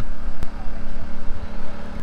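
A steady engine hum with a few constant tones over an uneven low rumble, and a single sharp click about half a second in.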